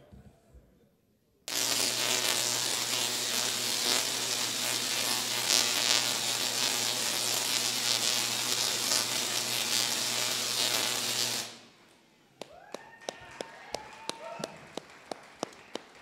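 Tesla coil firing: a loud, harsh electrical buzz over a steady low hum. It starts suddenly about a second and a half in and cuts off about ten seconds later. After it stop come scattered sharp clicks and voices.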